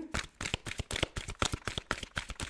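A deck of oracle cards being shuffled by hand: a rapid, irregular run of card clicks and slaps, about ten a second.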